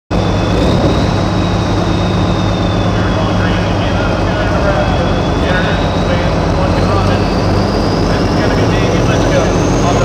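Pulling tractor's diesel engine running hard and steady, with a high turbo whine that climbs in pitch over the second half.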